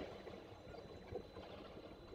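Faint ambient noise picked up by an outdoor falcon nest-camera microphone: a steady low rumble and hiss with a few faint ticks, and a thin steady high whine.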